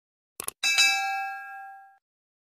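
Subscribe-button sound effect: a quick double click, then a notification-bell ding that rings and fades away over about a second and a half.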